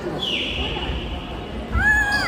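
Athletic shoes squeaking on the indoor court floor as volleyball players move in a rally. One high squeal comes just after the start and a shorter one that rises and falls comes near the end, over voices in the hall.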